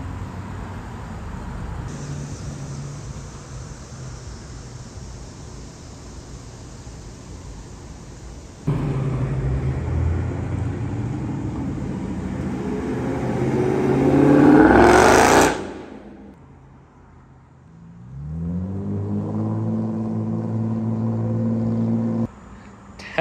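Street traffic noise, then a Dodge Charger's engine accelerating, the note rising in pitch and getting louder to a peak about fifteen seconds in before stopping abruptly. Near the end another vehicle's engine hums steadily.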